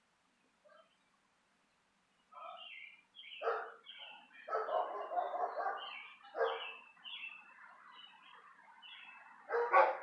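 A dog barking several times, one call drawn out for over a second, with small birds chirping repeatedly.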